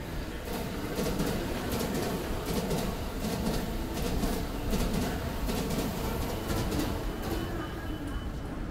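Busy railway station concourse ambience: a steady low rumble with frequent irregular clicks and taps.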